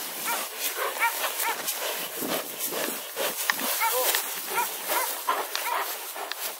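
A Malinois-type dog biting and tugging a leather bite sleeve, letting out short, high whines every second or so over the rustle and scuffle of the struggle in dry grass.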